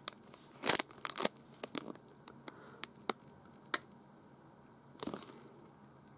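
Clear plastic bag crinkling as it is handled with a metal pin inside: a scatter of short, sharp crackles, loudest about a second in, thinning out, with another brief cluster about five seconds in.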